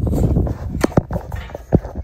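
Steel sheep hurdles being lifted and fitted together, the frames giving a few sharp knocks, two close together about a second in and one more near the end, over wind rumble on the microphone at the start.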